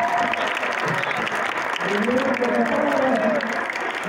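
An audience applauding. About two seconds in, a man's voice comes in over the applause.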